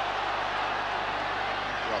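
Steady crowd noise from a football stadium's stands during open play, an even, wordless hubbub.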